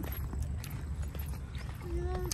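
Footsteps of people walking, faint scattered knocks, over a steady low rumble of wind on the phone's microphone. A brief voice begins right at the end.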